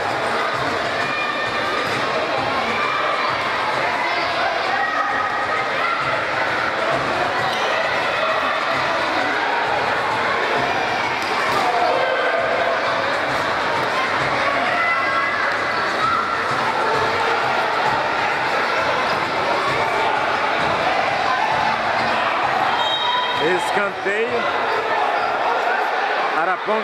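Spectators in a futsal gymnasium shouting and chattering steadily, with the ball being kicked and bouncing on the indoor court now and then.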